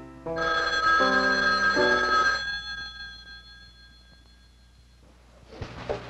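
An old desk telephone's bell rings once for about two seconds and dies away over a few piano chords. The piano breaks off as the ring starts. A few knocks come near the end.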